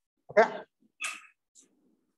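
A man's voice saying a short "okay", followed about half a second later by a brief breathy hiss.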